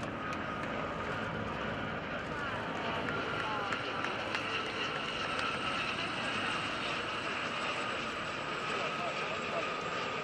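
Formation of military helicopters, an Mi-17 and Gazelles, passing overhead: steady turbine and rotor noise with a thin steady whine running through it. Voices in the background.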